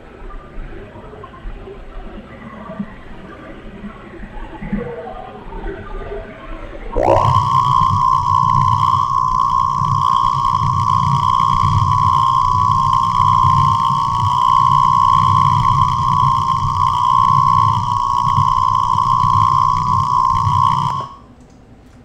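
Shortwave radio picking up electrical interference from a household appliance's DC motor: low radio noise, then about seven seconds in a whine that sweeps quickly up and holds steady at a high pitch over a low buzz, cutting off suddenly about a second before the end.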